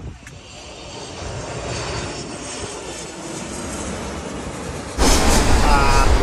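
Jet airliner engines passing low on landing approach: a steady rush of engine noise that swells over the first two seconds and then holds. About five seconds in, it gives way abruptly to a much louder rush heavy in the bass.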